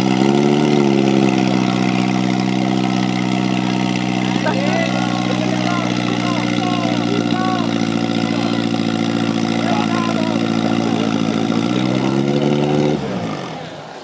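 Portable fire pump's engine revving up and running steadily at high revs while it pumps water through the attack hoses. Near the end it slows and stops.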